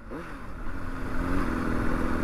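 Honda CBR600RR's inline-four engine running at low revs as the bike rolls slowly, the revs rising slightly about two-thirds of the way in, with wind and road noise underneath.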